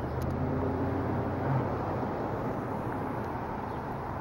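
Car engine and road noise at low speed, a steady low hum heard from inside the car.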